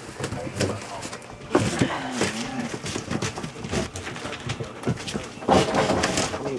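Puppies tussling on a newspaper-covered floor: paper rustling and crinkling, with a few short puppy vocalizations.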